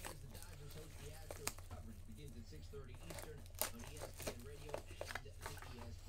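Faint talking away from the microphone, with a few soft clicks and a steady low hum underneath.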